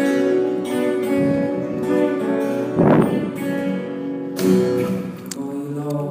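Live acoustic guitar: sustained, ringing notes and chords that shift in pitch, heard from the audience in a theatre, with one sharp, louder strike about halfway through.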